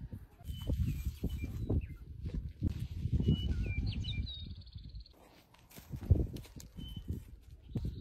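Small birds chirping in a few short, high whistles over irregular low rumbling and thuds.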